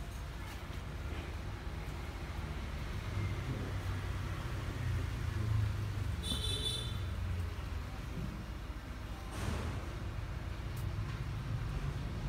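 Steady low rumble of outdoor background noise, with a brief high squeak about six seconds in and a short hiss about nine and a half seconds in.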